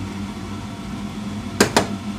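Two quick clinks of a metal spoon against a small glass bowl near the end, as stirring of a cornstarch slurry begins, over a steady low hum.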